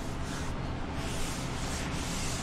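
Wet sponge wiping across a freshly ground concrete countertop, a steady rubbing hiss, clearing the grinding slurry to show the cut aggregate.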